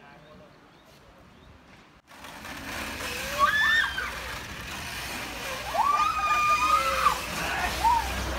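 Faint outdoor ambience for about two seconds, then much louder: people calling out and squealing in high, gliding voices over a steady rushing noise as riders go round on a wooden hand-turned Ferris wheel.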